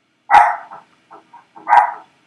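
A dog barking: two loud, short barks about a second and a half apart, with a few faint short sounds between them.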